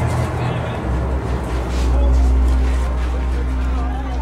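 Muffled, indistinct voices over a deep, steady low hum that grows louder about a second in.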